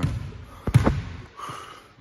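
Basketball bouncing on a gym floor: a sharp bounce about two-thirds of a second in, with a second close behind it.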